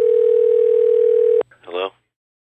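A steady single-pitch telephone dial tone, cut off with a click about a second and a half in, followed by a brief snatch of a voice.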